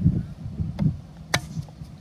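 Fiskars X7 hatchet chopping a softwood plank into kindling: a light knock, then about one and a half seconds in a single sharp crack as a piece splits off. Wind rumbles on the microphone throughout.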